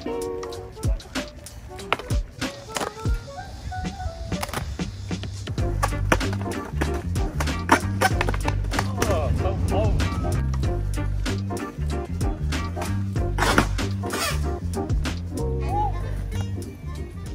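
Background music with a heavy bass line coming in about five seconds in, over skateboard sounds: urethane wheels rolling on a hard tennis-court surface and sharp clacks of the board's deck and tail against the court.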